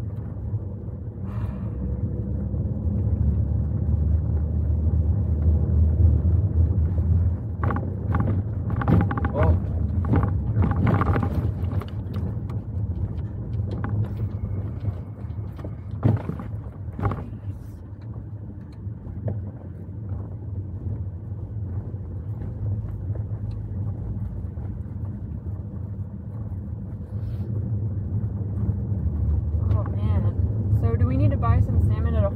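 A car's engine and tyres running steadily on the move, heard inside the cabin as a low rumble. Clusters of knocks and rattles come between about 8 and 12 seconds in and again around 16 to 17 seconds.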